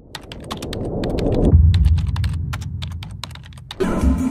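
Sound effects for an animated text title: a rapid, uneven run of sharp clicks over a low rumble that swells for about a second and a half and then fades.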